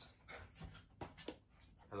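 Cardboard Funko Pop boxes and a plastic shopping bag being handled: several short, light knocks and rustles as boxes are lifted out and set down.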